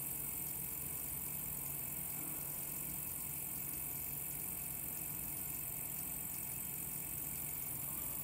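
Electric pottery wheel running at a steady speed: a low, even motor hum with no breaks.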